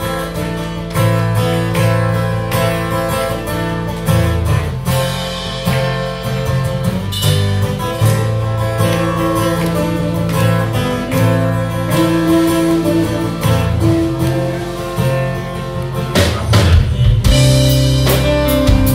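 Live country band playing an instrumental intro: strummed acoustic guitar and electric guitar over bass and a drum kit, with a run of drum hits near the end.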